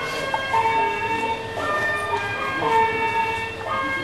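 A loud siren-like sound of steady tones that switch back and forth between two pitches about once a second.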